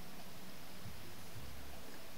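Faint steady shortwave static hissing from a Belarus-59 tube radiola's speaker while the dial is turned between stations, with a couple of brief low rumbles.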